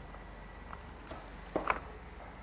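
Light wooden knocks and clacks as stacked wooden hundred-square tiles are pushed together in a wooden tray, the loudest a quick double clack about one and a half seconds in.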